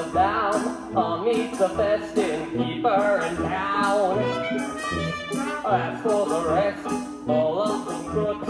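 Live musical-theatre number: voices singing over a pit band with keyboard, a bass note on a steady beat and light percussion on the beat.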